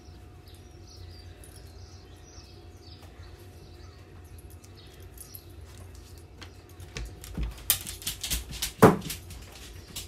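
Faint bird chirps over a steady low background, then a cluster of sharp knocks and low bursts from about seven seconds in, the loudest a little before nine seconds.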